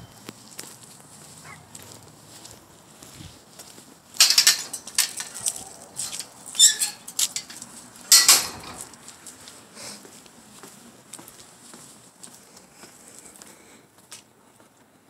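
Chain-link fence gate rattling and clanking in several sharp metallic bursts as it is gripped and worked by hand, in the middle of the stretch, with fainter clicks and rustling before and after.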